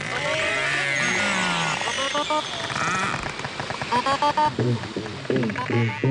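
Beluga whale calls recorded underwater: a run of whistles and chirps that glide up and down, with rapid pulsed squeaks. Late on, a series of low, quickly repeated pulses begins.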